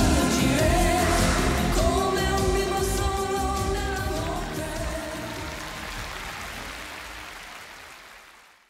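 Closing bars of an Italian pop ballad sung as a male–female duet: the singers hold a long final note over the band, then the music fades away.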